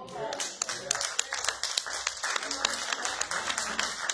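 Congregation applauding: many quick hand claps over a steady noise of the crowd.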